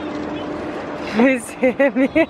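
A woman laughing, a quick run of short "ha-ha-ha" sounds starting about a second in, over a steady low hum.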